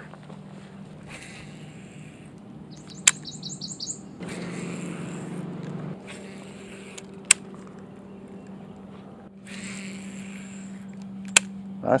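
A bird gives a quick run of about eight high chirps about three seconds in. Underneath are a low steady hum and patches of rustling noise with three sharp clicks as a baitcasting rod and reel are cast and cranked.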